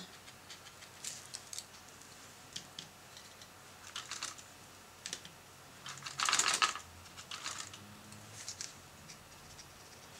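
Faint, scattered taps and clicks of a small round-tip watercolor brush dabbing paint onto paper, with a louder brief rustle about six seconds in.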